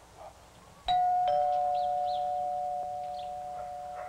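Two-tone doorbell chime rung about a second in: a higher note, then a lower one a moment later, both ringing on and slowly fading.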